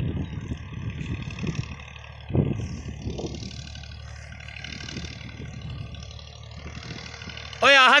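Open-air ambience with wind buffeting the microphone in low thumps and faint distant voices, then a loud drawn-out shout near the end whose pitch rises and falls.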